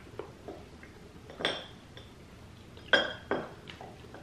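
A metal knife clinking against a ceramic plate while cutting a caramel: a few light taps, then two sharper clinks about three seconds in, a third of a second apart.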